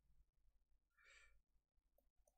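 Near silence, with one faint, short exhale or sigh from a person about a second in.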